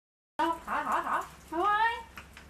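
Cat meowing, several short calls, the last one rising in pitch about a second and a half in. The sound starts abruptly about a third of a second in, over a faint low hum.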